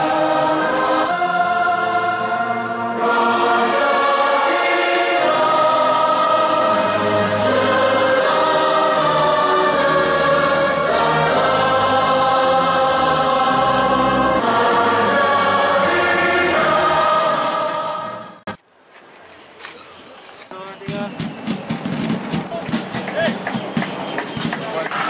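An anthem sung by a choir with instrumental backing, in slow sustained chords that change about every second. It cuts off abruptly about 18 seconds in, and after a brief lull a noisy crowd-like ambience rises near the end.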